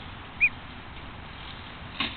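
A week-old domestic duckling gives a single short, high peep about half a second in.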